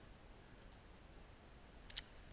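Computer mouse button clicked: a faint click about half a second in and a sharper one near the end, over quiet room tone.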